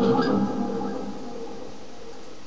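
Ibanez electric guitar through a Line 6 Spider amp: a sustained note is cut off, and a brief scrape of muted strings fades over about a second into steady amplifier hiss.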